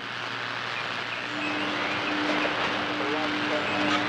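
Shortwave radio static between transmissions: a steady hiss, joined about a second in by a steady low tone that holds.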